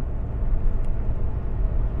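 Steady low rumble of a truck's engine and tyres at highway speed, heard from inside the cab while it tows a boat trailer.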